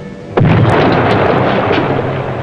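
Depth charge explosion heard from inside a submerged submarine: a sudden loud blast about a third of a second in, followed by a long rumble that slowly dies away, over background music.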